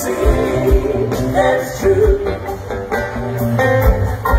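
Live rock band playing at full volume, with electric guitars, bass guitar and drums, heard through the stage PA from the audience.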